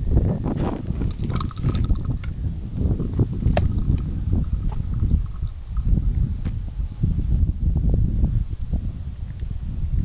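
Wind buffeting a body-worn camera's microphone, an uneven low rumble, with scattered light clicks and knocks and footsteps on pavement.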